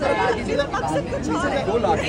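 Overlapping chatter of several people talking at once in a crowd, no single voice standing out.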